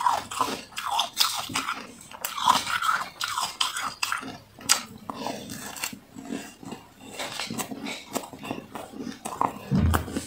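Crunching and chewing of a mouthful of powdery freezer frost: a dense run of irregular crunches that thins out in the second half. A dull low thump sounds just before the end.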